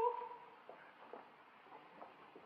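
The end of a woman's sung note in an old live opera recording, fading out within the first half-second. Then a hushed pause with a few faint, short, soft sounds.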